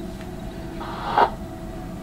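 Steady low hum with a faint hiss, and one short swish a little past a second in.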